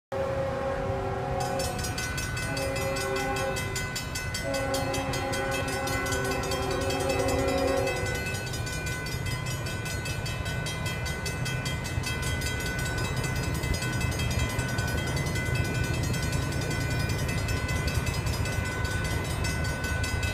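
A freight locomotive's Leslie air horn sounds a multi-note chord in three blasts: a long one, a shorter one about two seconds in, and a long one from about four and a half to eight seconds. This is the horn signal for the grade crossing. Under it the crossing's warning bell rings steadily, with the low rumble of the approaching train.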